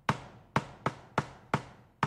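A series of about six sharp knocks, two to three a second at uneven spacing, each ringing out briefly.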